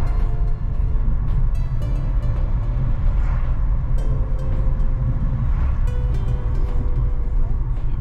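Steady low rumble of a car's engine and tyres heard from inside the cabin while driving along a highway, with faint tones laid over it that may be music.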